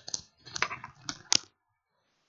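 Handling noise close to a computer microphone: rustling with a few sharp clicks, stopping about one and a half seconds in.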